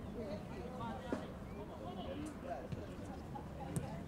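Open-air football pitch ambience: faint, distant shouts and calls from players, over a low steady outdoor rumble, with a short sharp knock about a second in and another near the end.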